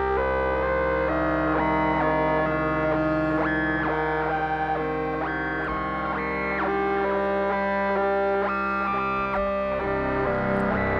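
Moog Muse analog polyphonic synthesizer playing a continuous run of chords with oscillator sync, each voice's sync amount moved by its own per-voice LFO so that every note's tone shifts on its own. The chords change about once a second, with brief pitch slides between some of them.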